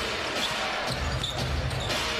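Indoor basketball arena sound: a steady crowd murmur with a ball being dribbled on the hardwood court.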